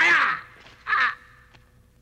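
A man's long, harsh yell ends about half a second in, followed by a short second cry about a second in.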